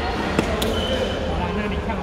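A badminton racket strikes a shuttlecock with one sharp smack about half a second in, over the steady chatter of players in a large, echoing sports hall.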